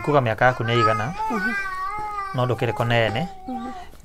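A man talking in Kikuyu. Over the middle of it a high, drawn-out, wavering cry rises and falls.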